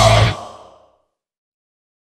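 Death metal band with drums and distorted guitars playing the final chord of a song, cutting off about a third of a second in and ringing out within a second.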